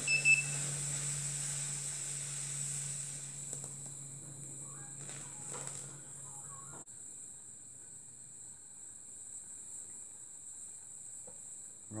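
Gas brazing torch flame hissing steadily as bronze filler rod is fed onto a cast-iron cylinder fin, the hiss easing off after a few seconds. A brief high tone sounds near the start, and a steady low hum runs until about halfway.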